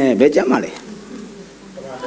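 A man's voice speaking in a hall, one phrase at the start and another beginning near the end, with a quieter pause between.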